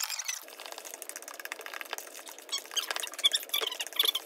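A utensil stirring thick chocolate cake batter in a glass mixing bowl: a run of scrapes and small clinks against the glass, busier and louder past the halfway point.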